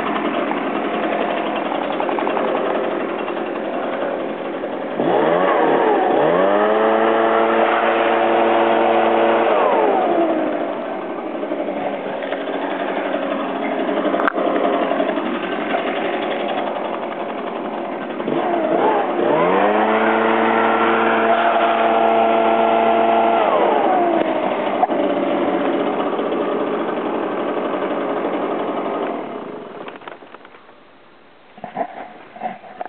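Echo PB-770 backpack blower's 63 cc two-stroke engine idling, then throttled up to full twice, each time for about five seconds before falling back to idle. The engine stops near the end.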